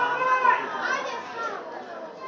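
Raised voices shouting across a football pitch, high calls that rise and fall through the first second and a half, over a faint open-air background.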